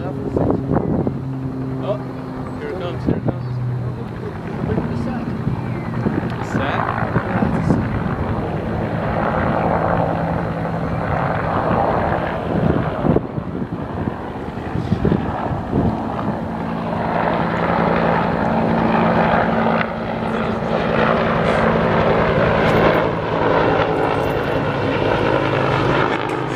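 Helicopter flying overhead: a steady engine and rotor hum that grows louder in the second half as it passes near.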